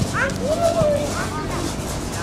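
Children's high voices shouting and calling out over one another.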